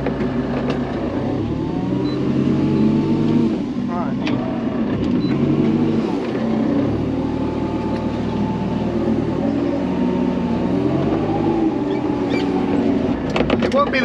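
Manitou telehandler's diesel engine heard from inside the cab, its revs rising and falling several times as the loader grabs and lifts a round straw bale.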